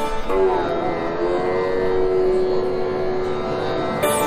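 Sitar playing raga Yaman: one note is plucked and slides down in pitch, then settles and rings on as a long held note.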